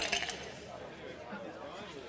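Faint, indistinct background chatter of voices, with a few soft clicks at the start.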